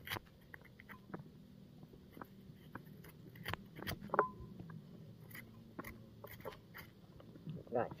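Metal spoon scraping the flesh out of a halved unripe green banana: a run of soft, irregular scrapes and small clicks.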